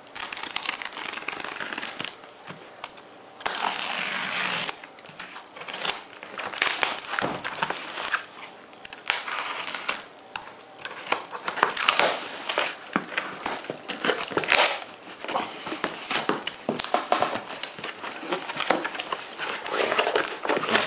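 A cardboard shipping box being opened by hand: packing tape cut and ripped, cardboard flaps pulled open and crumpled paper packing rustling, in irregular bursts with one longer rip about four seconds in.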